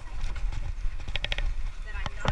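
Bicycle tyres rolling over the boards of a wooden footbridge: a quick run of about four clacks a little past halfway, over a steady low rumble.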